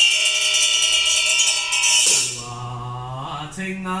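A Taoist priest's handheld brass ritual bell is struck once at the start and rings for about two seconds as it dies away. About two seconds in, his chanting begins in long held notes, the pitch stepping up near the end.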